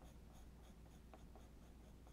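Faint scratching of an extra soft pencil drawing on paper, with a few light ticks, over a low steady hum.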